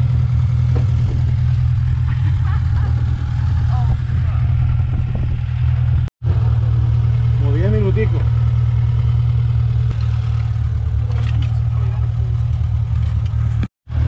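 Steady low drone of a car's engine and tyres while driving. The sound cuts out for an instant twice, with a faint voice about eight seconds in.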